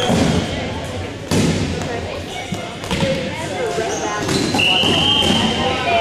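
Rubber dodgeballs thudding and bouncing on a hardwood gym floor, with a few sharp hits, over players' voices in the gym. Near the end a single high steady squeal lasts under a second.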